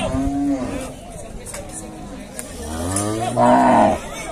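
Zebu cattle mooing: one short moo at the start, then a longer, louder moo that swells near the end and stops abruptly.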